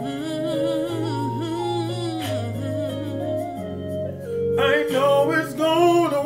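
A gospel song plays: long, wavering sung notes over an instrumental backing of steady low notes. The singing grows louder about four and a half seconds in.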